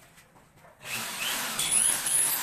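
Corded electric drill starting up about a second in and running with a rising whine, driving a screw through a ceiling board into the metal ceiling frame.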